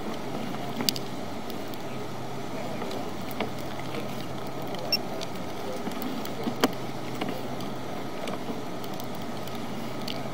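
Sewer inspection camera rig being fed down a sewer pipe: a steady hiss and low hum, with a few sharp clicks and knocks as the push cable goes in.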